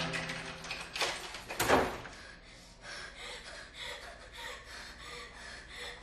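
The tail of guitar music fading out, then two sharp knocks about a second in and shortly after, followed by faint background ambience.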